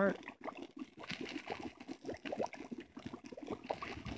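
A pan of liquid bubbling and popping over an open wood fire, with a steady run of short crackles.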